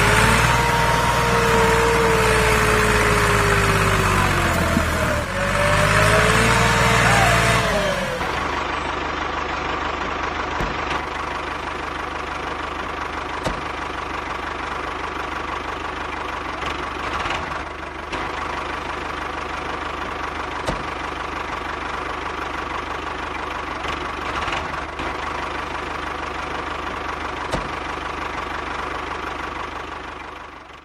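Small motor of a homemade toy tractor running under load: a loud whine that rises and falls in pitch over about the first eight seconds, then drops to a quieter, steady hum with faint clicks.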